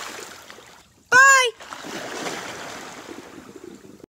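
Swimming pool water churning and settling after someone jumps in, with a short loud yell about a second in that rises and then falls in pitch, followed by continued splashing and sloshing of the water.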